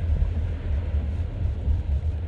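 Steady low rumble of a moving car heard from inside the cabin, with a light even hiss of road noise over it.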